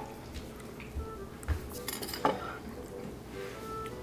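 Soft background music with a few sharp clinks of dishes and cutlery, the loudest a little after two seconds in.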